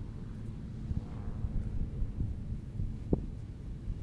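A low, uneven rumble of wind on the microphone, with soft irregular thuds and one sharper thump about three seconds in.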